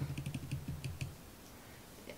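Makeup brush sweeping powder highlighter onto the cheekbone: a quick run of soft, scratchy ticks for about the first second, then it goes quiet.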